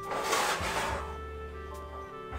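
Background music with steady held notes, and a brief noisy rustle during the first second as a pan is handled with a cloth towel.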